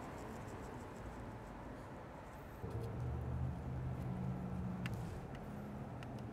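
Faint handling sounds as bacon-wrapped stuffed pasta shells are set onto a metal wire rack in a sheet pan, with a few light clicks. A low hum comes in about halfway through.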